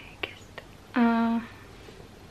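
A woman's voice between phrases: small mouth clicks and a breath, then a short wordless hesitation sound held at one steady pitch about a second in.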